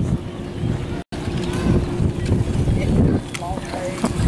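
Wind buffeting the microphone: a rough low rumble, with a faint steady hum in the middle and a brief complete dropout about a second in.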